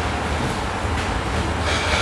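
Steady low mechanical rumble, with a few faint knife taps on a plastic cutting board as a chef's knife slices carrots.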